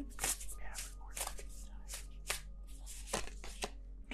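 Deck of oracle cards being shuffled by hand: a string of about a dozen irregular, sharp card flicks and taps.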